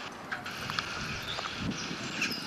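Quiet outdoor ambience: low, even wind noise on the microphone, with a few faint ticks.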